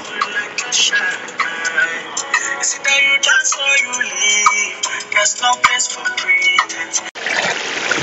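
Background music with a sung vocal line that cuts off suddenly about seven seconds in, giving way to the bubbling hiss of a pot of pepper sauce at the boil.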